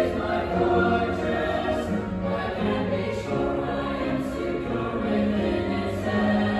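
Mixed-voice youth choir singing in parts, sustained notes shifting in pitch every second or so, with upright piano accompaniment.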